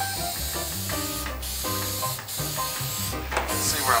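Aerosol can of rust-converter spray hissing as it is sprayed onto bare metal. The hiss breaks off briefly three times: about a second in, just after two seconds and just after three seconds.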